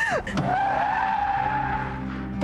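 Car tyres squealing in a hard braking skid: a steady high screech that fades near the end. A woman's short falling scream comes just before it.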